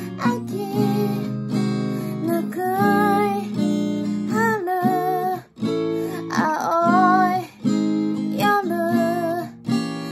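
Steel-string acoustic guitar strummed in chords, with a voice singing a melody over it in short phrases.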